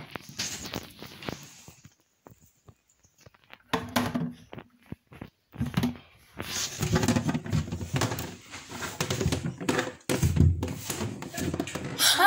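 Handling noise of a handheld phone rubbing and bumping against hair and skin, with scattered knocks and a heavier thud about ten seconds in.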